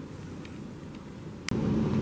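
Low, steady background noise, broken about one and a half seconds in by a sharp click, after which a louder low rumble sets in.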